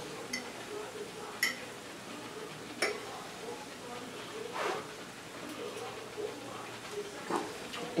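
A metal fork clinking against a plate, a few faint sharp clinks in the first three seconds, one of them ringing briefly. A short soft murmur comes a little past halfway.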